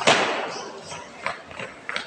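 Marching drill squad stamping their feet together in one loud stamp, then stepping off with a few sharper footfalls in unison on a hard court.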